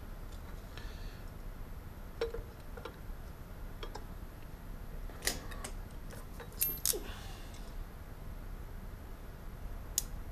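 Scattered small clicks and taps of wires and hand tools being handled while joining wires with a crimp butt splice, the sharpest about five and seven seconds in, over a low steady hum.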